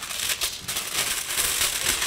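Aluminium foil being pulled off its roll, a continuous crinkling, crackling rustle.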